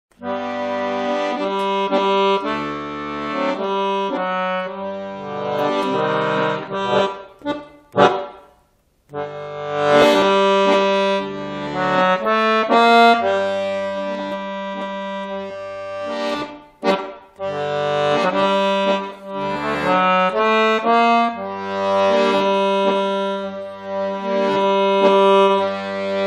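Beltrami chromatic button accordion playing a tune in held, reedy notes over separate bass notes on the beat, with a short break of about a second around eight seconds in.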